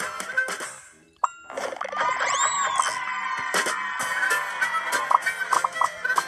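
Children's phonics game music and sound effects from a tablet: the tune fades out about a second in, then a bright chime opens a jingly passage with a whistling swoop up and back down and plinking notes.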